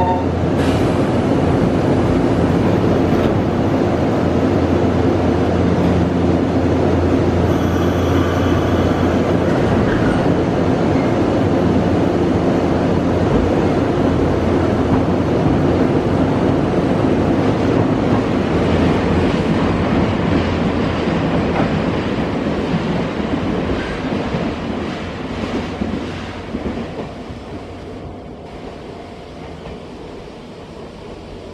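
Nankai electric commuter train pulling out of the station and running past close by: a loud, steady motor hum with wheel clatter over the rails. The sound fades away from about 22 seconds in as the train moves off.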